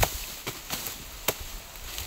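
Machetes chopping through raw sugarcane stalks: three sharp strikes, a little over half a second apart.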